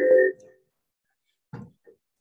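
Garbled echo over a video call, fading out with held, ringing pitches in the first half second, as a participant's doubled microphone setup feeds back. About a second of silence follows, then brief fragments of a voice near the end.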